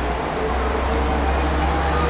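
Street traffic with a bus passing: a steady low engine rumble over road noise, with a faint steady hum.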